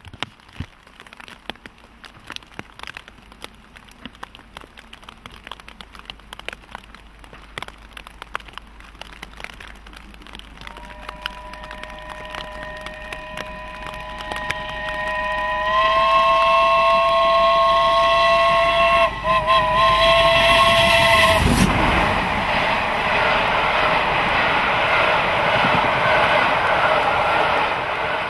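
Rain pattering loudly on a plastic bag over the microphone while the BR Standard Class 7 steam locomotive 70000 Britannia approaches with its train. About ten seconds in, a long high-pitched tone comes up and holds, wavering briefly, for around ten seconds. The engine then passes close with a loud rush at about 21 seconds, and its coaches roll by.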